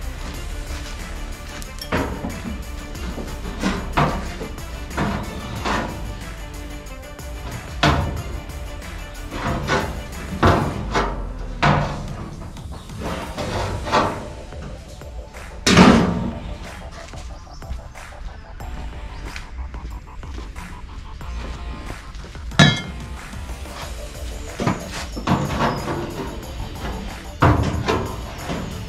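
Background music, with repeated knocks and thunks of a ribbed sheet-metal running board being handled and set against a truck's body. The loudest knock comes a little past halfway.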